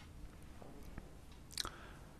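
Quiet pause with faint mouth noises close to the microphones: a few soft clicks and a brief, sharper lip smack about one and a half seconds in.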